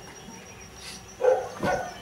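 A dog barking twice, short barks in the second half.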